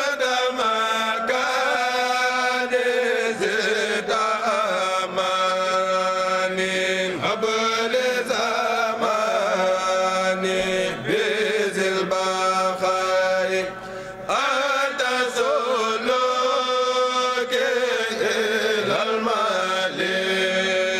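A group of men chanting a Mouride khassida together in long, drawn-out melodic lines, with one brief break for breath about two-thirds of the way through.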